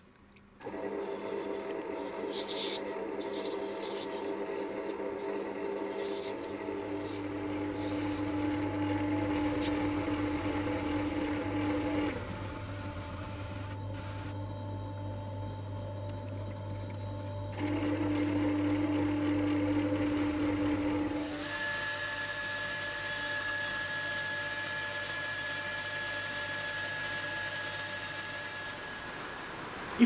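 Wood lathe motor running with a steady hum while sandpaper rubs against the spinning epoxy resin bowl in wet sanding. The sound starts just under a second in, and its tones change several times.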